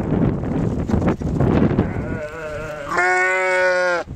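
Sheep bleating close by: a wavering bleat about two seconds in, then a loud, long, steady bleat in the last second, over a low noisy rumble in the first half.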